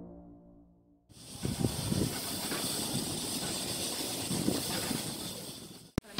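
Sliced beef, mushrooms and garlic sizzling on a hot tabletop barbecue grill plate: a steady hiss with small crackles. It starts about a second in, after a moment of silence, and cuts off just before the end.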